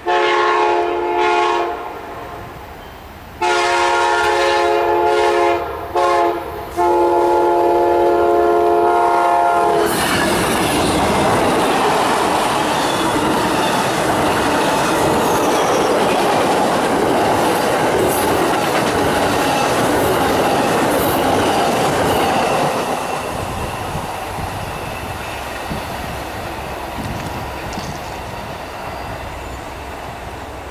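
Horn of an Amtrak GE P42DC Genesis locomotive sounding the grade-crossing signal as the train approaches: long, long, short, long. About ten seconds in, the locomotive passes close by with loud engine and wheel-on-rail noise, and the passenger cars keep rolling past, the sound easing off gradually over the last third.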